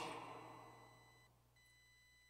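Near silence in a pause of speech: the church's reverberation of the last words dies away over about a second, leaving a few faint, steady high-pitched electronic tones.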